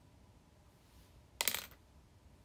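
A short clatter of small hard objects, like an item knocked or set down among others, about one and a half seconds in and lasting a fraction of a second.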